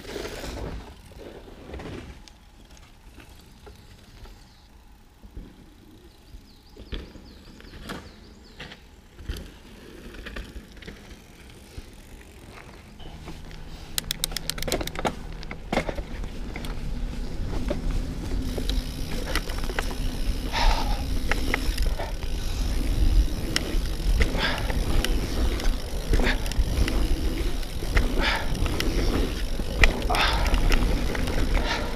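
Mountain bike riding over a dirt trail, heard from the handlebar: tyre noise on the dirt with clicks and rattles from the bike. It is quieter with scattered clicks in the first half, then grows into a steady rumble with wind on the microphone from about halfway through, after a short run of rapid ticking.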